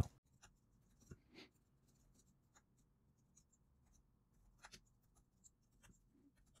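Faint computer-keyboard typing: scattered soft keystrokes over near silence, a few slightly louder about a second in and near the middle.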